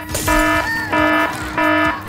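Comic sound effect added in editing: short electronic buzzer beeps, three in a row at an even pitch, with a brief wavering tone between the first two.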